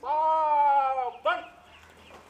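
A man's shouted drill command: one long drawn-out call, falling slightly in pitch over about a second, followed by a short, sharp final syllable.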